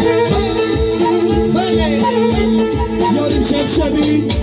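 Loud live band music over a PA system: a steady drum beat under a keyboard and sung vocals.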